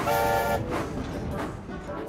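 A steam locomotive's whistle blowing one short, steady blast that stops about half a second in, with background music under it.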